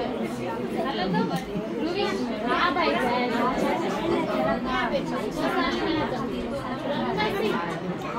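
Many people talking at once: overlapping chatter of a seated group of mostly women's voices, with no single speaker standing out.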